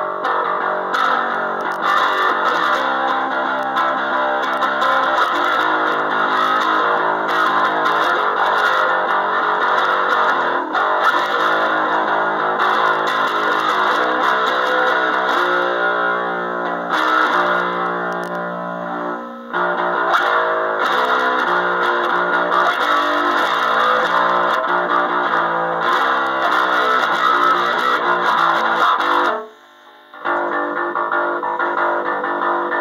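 Gear4music Precision-style electric bass guitar played through an amp with reverb, a run of sustained, changing notes. It dips briefly about two-thirds of the way through and stops just before the end.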